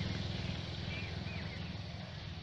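A motorcycle engine running nearby, its low pulsing hum slowly fading, with a few faint bird chirps about halfway through.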